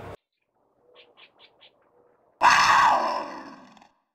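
Sound effect over the end of the video: four faint quick chirps, then about two and a half seconds in a loud cry with many overtones that fades away over about a second and a half.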